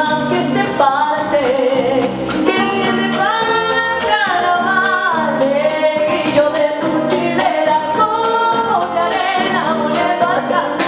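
A woman singing Argentine folk music live with a band of acoustic guitars, bass, drums and percussion, her voice sliding between held notes.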